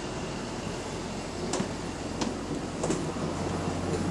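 Inside a moving bus: a steady low drive hum under road and cabin noise, with three short sharp rattles from the body and fittings in the second half.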